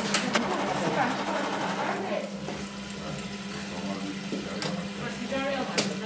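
Industrial sewing machine stitching fabric, busiest in the first two seconds or so, over a steady low hum.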